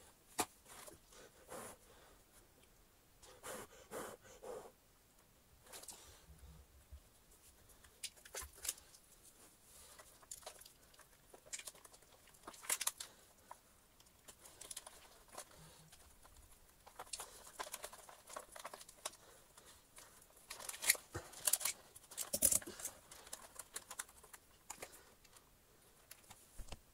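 Faint, irregular clicks, taps and rustles of hands fitting wires and a small circuit board around a vacuum cleaner motor in its plastic housing, busier in the second half.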